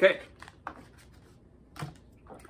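Faint, short rustles and clicks of a small plastic bag of accessories being picked up and set down on a table.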